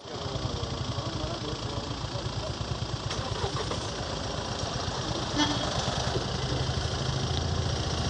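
Mahindra Scorpio SUV's engine running close by as the vehicle moves off slowly, a steady low, rapid engine beat. A short sharp sound comes about five and a half seconds in.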